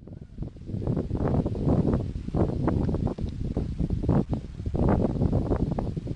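Wind buffeting the camera microphone in gusts, as a heavy, irregular low rumble.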